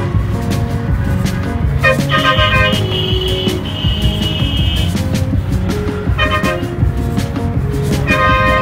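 Background music laid over a dense city traffic jam, with vehicle horns honking in sustained blasts over a low traffic rumble.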